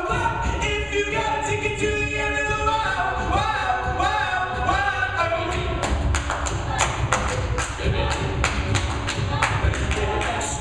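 Co-ed a cappella group singing a pop song, voices in close harmony over a sung bass line. Vocal percussion clicks and thumps keep the beat and get busier about six seconds in.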